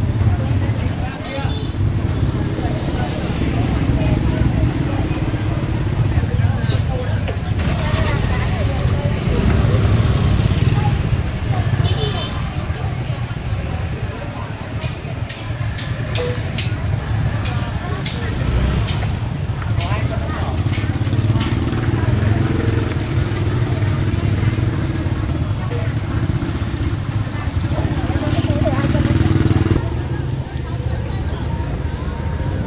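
Busy street-market ambience: overlapping chatter of vendors and shoppers over a steady low rumble of passing motorbikes, with a run of sharp clicks and knocks about halfway through.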